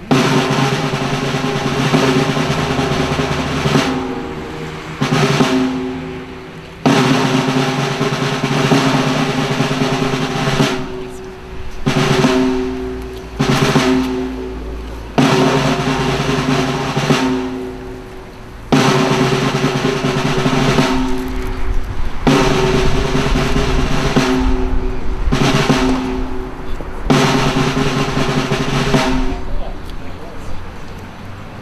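Ceremonial snare drum roll, played in stretches of one to four seconds broken by short pauses, accompanying a wreath-laying.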